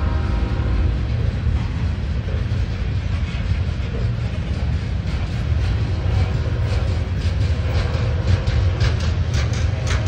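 Freight train cars (covered hoppers and tank cars) rolling past at close range: a steady low rumble of steel wheels on the rails, with a run of sharp clicks in the last few seconds.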